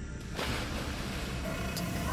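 Sustained tones of ominous background music fade out, and from about half a second in a steady, even hiss of noise takes over.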